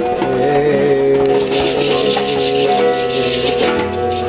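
Acoustic guitar and tabla playing together: held, ringing guitar notes, with a fast dense run of light high strokes from about a second and a half in.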